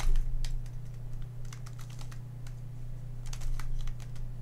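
A stickerless MoYu Redi Cube being turned by hand: a quick, irregular run of plastic clicks as its corners are twisted through a short move sequence.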